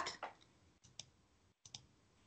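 A quiet pause with a few faint, short clicks: one about a second in and two close together near the end.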